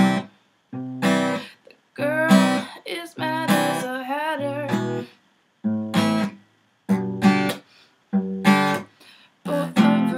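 Steel-string acoustic guitar strummed in separate chord strokes, about one every second and a half. Each chord rings briefly and then cuts off into a short silence.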